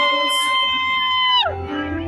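A loud, high held whoop from an audience member close to the recorder. It glides up, holds steady and falls away about a second and a half in, while the band's opening notes come in underneath.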